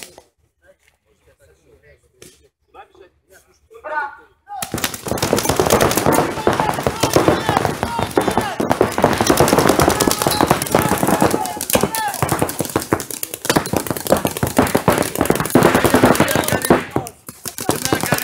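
Paintball markers firing in rapid strings, many shots a second, starting about four and a half seconds in and continuing almost to the end; the first seconds are nearly quiet.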